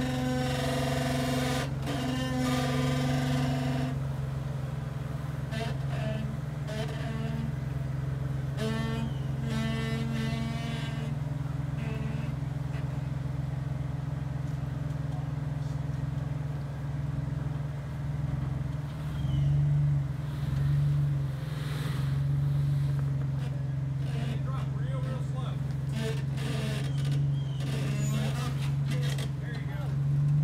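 Jeep Wrangler's engine running low and steady as it crawls over rock, with two brief rises in throttle about two-thirds of the way through.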